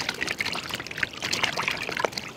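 Water splashing and sloshing in a large steel basin as hands scrub and rub pieces of raw meat and bone under the water, washing them.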